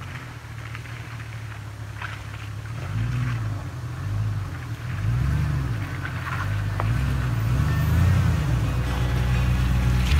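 GMC pickup truck's engine pulling the truck through deep mud ruts, the revs swelling and easing again and again as it works over the bumps, growing steadily louder as it nears.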